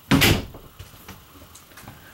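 Interior door of a 2015 Forest River Salem 300BH travel trailer being swung open, one loud knock lasting about a third of a second just after the start, followed by a few faint clicks.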